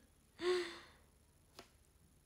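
A young woman's single short, breathy laugh, an exhale with a slight fall in pitch, about half a second in. A faint click follows about a second later.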